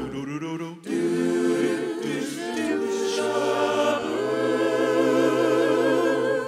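Vocal group singing in close harmony a cappella, holding long chords with vibrato. After a brief break about a second in, it settles into a long sustained final chord.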